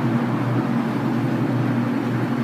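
Steady low mechanical hum with a constant low tone and no change in pitch or level.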